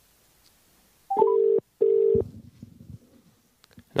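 Two electronic call tones about a second in, each a steady beep of about half a second with a short gap between them, the first opened by a quick rising chirp: the sound of a phone or video call connecting to the remote guest.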